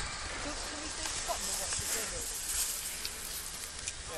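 Skis sliding over snow, a hiss that swells in the middle as a skier comes closer, over a low rumble of wind on the microphone.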